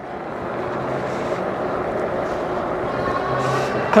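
Steady wind and fat-tyre road noise from an e-bike riding at about 15 mph on pedal assist, building slightly. A faint motor whine rises in pitch near the end as the bike speeds up.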